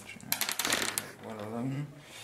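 Dice thrown onto a tabletop game board, clattering as they tumble: a quick run of clicks in the first second, then a man's voice briefly.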